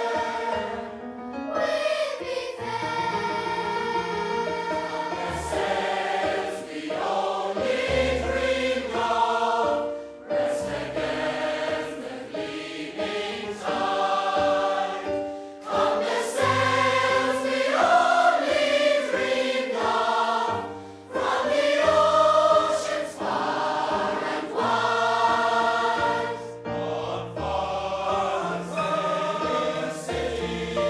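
Choir singing in harmony, holding long notes and moving from chord to chord, with two brief breaks between phrases about a third and two thirds of the way through.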